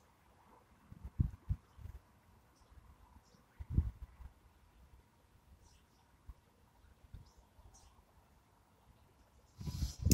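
Quiet outdoor ambience with a few soft low thuds, a cluster about a second in and another near four seconds, and faint, sparse high chirps of distant birds.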